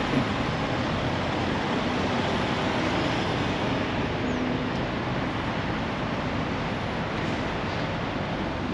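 Steady vehicle noise: idling trucks and traffic, an even unbroken rumble with a low hum under it.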